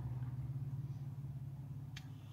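Low, steady engine drone of a passing Dodge, heard from inside a parked car, slowly fading away. A short click comes near the end.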